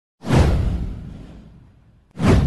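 Whoosh sound effect with a deep low boom. It hits sharply just after the start and fades away over about a second and a half.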